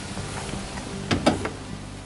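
Rear door of a Citroën van being handled, with two quick knocks about a second in.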